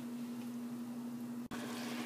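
Vegetables and marinade sizzling faintly in a frying pan, with a steady hum underneath and a brief dropout about one and a half seconds in.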